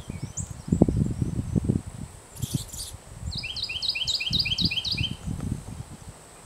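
A songbird sings a quick run of about eight repeated slurred notes in the second half, over uneven low rumbling that is the loudest sound throughout.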